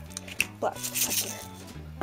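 Pepper mill grinding black pepper in a few short bursts, over background music.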